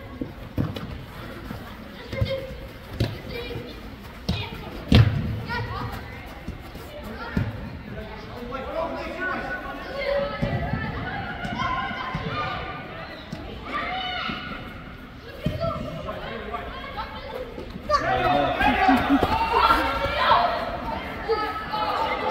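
A soccer ball kicked on indoor turf, several sharp thuds echoing in a large hall, the loudest about five seconds in. Spectators' voices and shouts run underneath and grow louder near the end.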